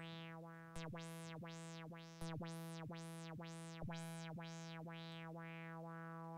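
A single held note from a Native Instruments Massive X software synthesizer, its tone brightening and dulling about twice a second under LFO modulation. The sweeps grow smaller near the end as the LFO is faded out.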